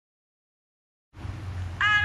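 Silence, then about a second in a low steady hum comes up, and near the end a voice starts a sung chant on a held, high note.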